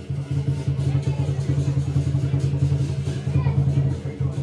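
Lion dance drum played in a fast, steady, rumbling roll, with faint cymbal strokes and onlookers' voices underneath.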